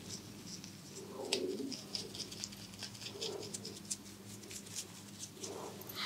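A small brush working white foam inside a person's ear close to the microphone: dense, fine crackling and ticking of foam and bristles. Three soft, low, muffled sounds come about two seconds apart.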